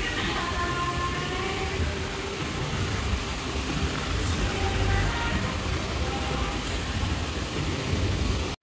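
Indoor shopping-mall ambience: a steady low rumble with the faint murmur of distant voices carried through a large open atrium.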